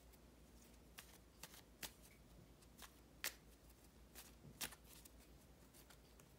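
A deck of playing cards being shuffled by hand, heard as faint, scattered flicks and taps of the cards.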